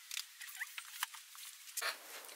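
Faint rustling and small scratchy clicks of clothing and a paperback being handled as a person moves close to the microphone and picks up a book, with a louder rustle near the end.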